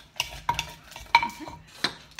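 Wooden pestle knocking and a metal spoon clinking and scraping in a clay mortar as papaya salad with crab is pounded and mixed. Several irregular knocks, the loudest a little after a second in.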